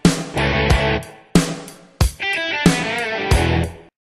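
Rock intro music with distorted electric guitar, driven by a run of hard accented hits. It stops abruptly just before the end.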